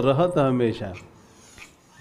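A man's voice speaking a drawn-out, sing-song phrase for about the first second, then a brief pause before he goes on.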